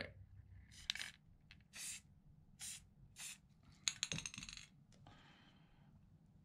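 Aerosol spray-paint can sprayed in four short hissing bursts, about one a second, followed about four seconds in by a quick run of metallic clicks and a last faint hiss.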